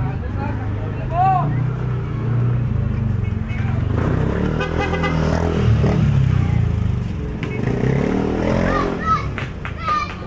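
Busy alley ambience: a motorcycle engine running and passing close, loudest about halfway through, over a steady low motor rumble, with people's and children's voices calling around it.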